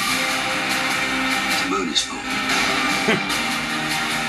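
Movie trailer soundtrack playing: music with long held notes, with a few short voice sounds over it.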